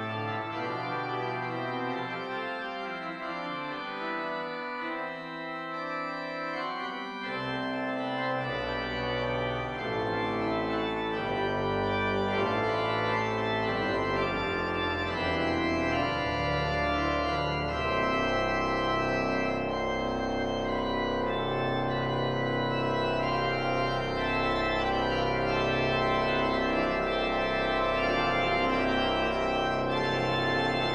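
Church organ playing a German chorale-based piece, with sustained chords and moving lines on the manuals. A low bass line enters about eight seconds in, and from about eighteen seconds the sound grows fuller and louder.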